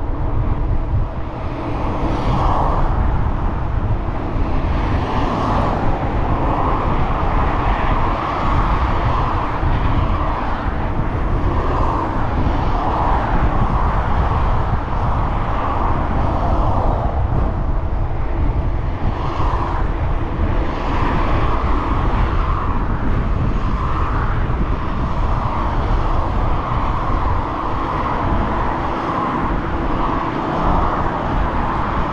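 Wind rumbling on the microphone of a moving bicycle, over steady road noise from freeway traffic just beyond the fence, with passing vehicles swelling and fading every few seconds.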